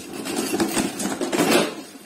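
Loose tangles of copper winding wire stripped from a car alternator being scooped off a scale and dropped into a container: a continuous rustling of wire with many small metallic clicks.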